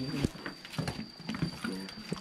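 Footsteps in sandals on a paved path: a string of quick, uneven steps.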